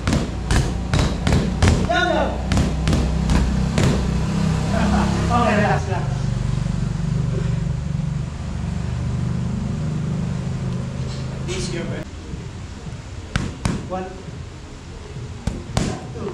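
Boxing gloves smacking against focus mitts, a quick run of several punches a second for the first few seconds, then a few scattered single hits later on. A steady low hum sits underneath until about two-thirds of the way through.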